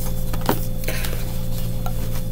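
A few faint clicks and taps of tarot cards being handled and laid down on a table, over a steady low hum.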